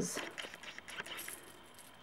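Faint clinking and light rustling of small metal rhinestone and pearl embellishments, shifting against each other as they are tipped out of a sheer organza drawstring bag into a hand. The clicks are scattered and small, thinning out toward the end.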